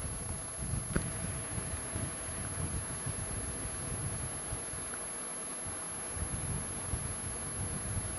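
Quiet room tone of a lecture hall heard through the PA microphone: a steady low rumble and hiss with a faint, steady high-pitched tone, and a small click about a second in.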